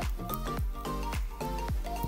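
Background music with a steady beat, about two beats a second, under short repeated pitched notes.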